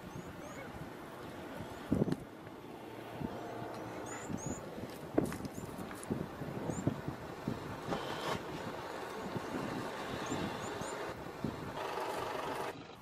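Outdoor field sound of a low steady rumble with wind on the microphone, small birds giving short high chirps in pairs several times, and a few brief dull knocks or grunts about two and five seconds in.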